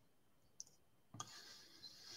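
Near silence: one faint click about half a second in, then faint soft noise a little past a second in.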